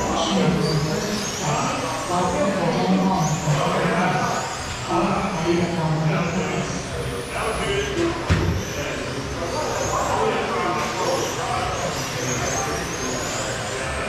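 Electric 1/10 RC touring cars with 21.5-turn brushless motors racing, their motors whining in rising sweeps again and again as they accelerate out of the corners, over the chatter of people talking.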